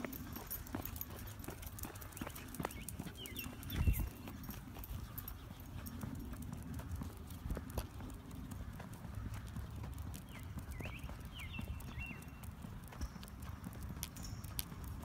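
Steady footsteps and light clicking steps of a person and a small dog walking on a leash along a concrete sidewalk, with a thump about four seconds in.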